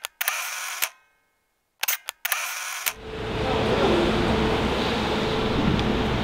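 Camera shutter clicks in two short groups separated by dead silence, during a cut-in of photos from a shoot. From about three seconds in, a steady hum and hiss of parking-garage ventilation takes over.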